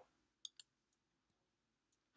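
Two short, faint computer mouse clicks close together, choosing a menu item; otherwise near silence.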